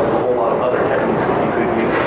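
Speech: a person talking throughout, with no other distinct sound.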